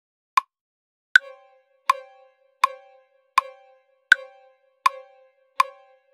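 A DAW metronome clicking at about 80 beats a minute, with a higher-pitched click on the first beat of every bar. From about a second in, a software violin note is held underneath the clicks, played from a MIDI keyboard.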